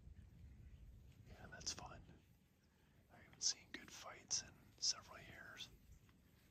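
A person whispering a few hushed words, with sharp hissing 's' sounds. There is a brief phrase about a second and a half in and a longer one from about three seconds.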